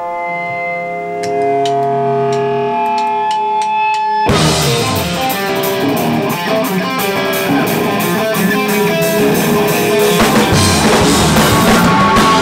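Rock band playing live: an electric guitar plays sustained picked notes alone for about four seconds, then drums, bass and guitars all come in at once and play loud, full-band rock.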